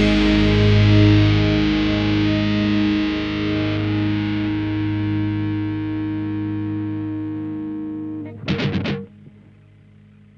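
Distorted electric guitar's final chord ringing out and slowly fading, in an open tuning a half step above DADGAD. About eight and a half seconds in comes a brief flurry of four or five sharp scratchy hits, after which only a faint low hum remains.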